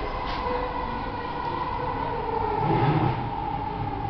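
Singapore MRT train heard from inside the carriage as it pulls into a station: a steady rumble of running gear with a high whine held throughout.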